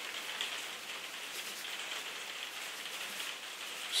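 Sponge paint roller rolling thin acrylic paint across canvas, a steady hiss.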